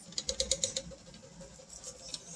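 All-lead-screw 3D printer running a print, its stepper motors and lead screws giving a faint steady whine, with a quick run of light clicks in the first second.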